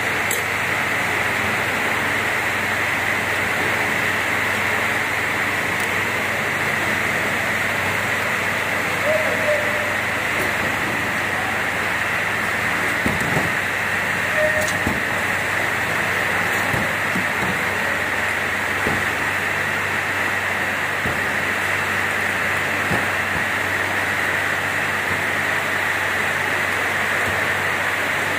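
Steady running noise of an induction cap-sealing line: the induction cap sealer and its bottle conveyor, a constant hiss with a strong high band. A few light knocks of plastic bottles and caps being handled come about halfway through.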